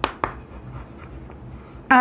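Chalk writing on a chalkboard: a couple of sharp taps in the first moment, then lighter scratching strokes as a word is written. A man's voice begins right at the end.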